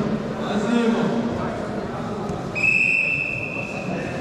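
Referee's whistle blown once in a long, steady, high blast, starting a little past halfway and lasting about a second and a half. Faint voices echo in the hall before it.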